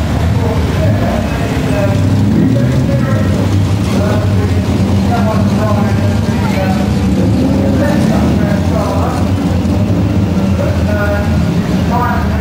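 Classic racing car engines running with a steady low drone as the cars move along the pit lane, with indistinct voices over them.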